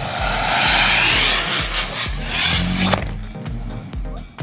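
Homemade potassium nitrate and sugar rocket motor burning with a loud hiss as it spins on the pavement, cutting off suddenly after about three seconds. Background music with a steady beat plays throughout.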